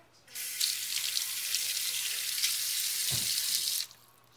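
Kitchen faucet running water over a tomato held in the sink to rinse it: a steady hiss that comes on sharply just after the start and is shut off sharply just before the end. A dull bump sounds shortly before the water stops.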